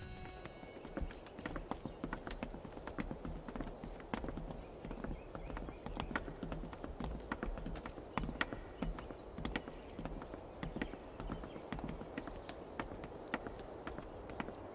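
Footsteps of several people walking down wooden stairs and along a wooden walkway: many irregular hard footfalls knocking on the boards.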